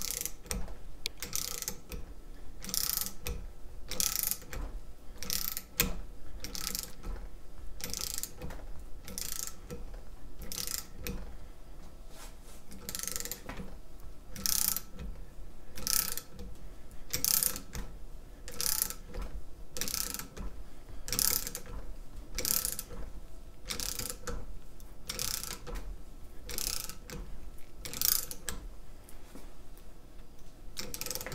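Socket ratchet wrench clicking on each return stroke as it turns the screw press of a steel nut splitter, in short bursts about three every two seconds, driving the wedge between the plates of a folding bike lock.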